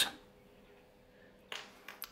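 Near silence between spoken phrases, broken by one short, soft noise about one and a half seconds in.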